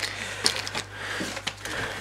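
Small packaging being handled by hand: a plastic bag rustling softly, with a few light clicks of cardboard and plastic parts as a spare cleaning blade is packed back into its box.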